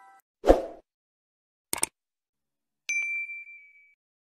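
Sound effects of a subscribe-button animation: a short thump, then a click just under two seconds in, then a single bell-like ding about three seconds in that rings for about a second.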